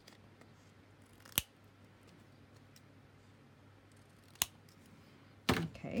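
Scissors snipping through a paper tag: two sharp snips about three seconds apart, then a louder knock near the end.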